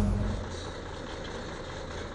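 Steady low hum of a mine air compressor running, fading out within the first half second and leaving a faint, even rumble.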